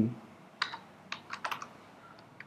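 Computer keyboard being typed on: about six light, separate keystrokes in an uneven run, starting about half a second in.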